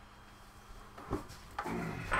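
Low handling noises from a large RC crawler truck being brought onto a workbench: a short knock about a second in, then rubbing and scraping that build near the end.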